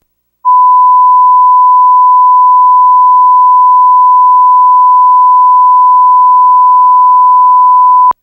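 1 kHz line-up tone accompanying SMPTE colour bars, a steady loud pure beep that starts about half a second in and holds unchanged until it cuts off abruptly with a click at the end.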